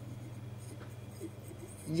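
Quiet pause on a courtroom audio feed: a steady low electrical hum with a few faint rustles. A voice starts just at the end.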